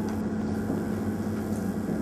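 Steady low electrical hum with an even background hiss: room and microphone noise in a pause in the speech.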